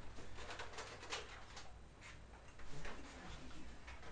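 A string of light, quick plastic clicks from a Nerf blaster being handled and worked, most of them in the first two seconds, with a few fainter ones later.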